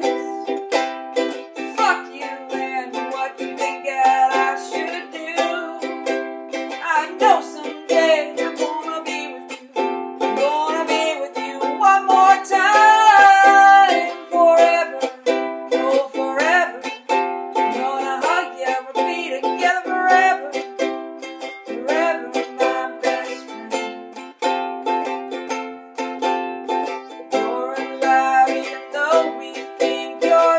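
Ukulele strummed in a steady rhythm, with a voice singing a melody over it at times.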